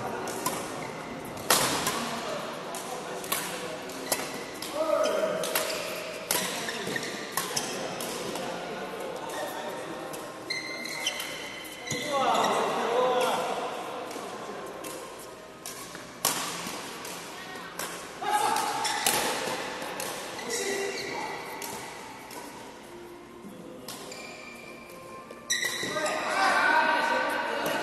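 Badminton rackets striking a shuttlecock in a doubles rally: a run of sharp cracks, with short high squeaks of shoes on the court mat and players' voices in between.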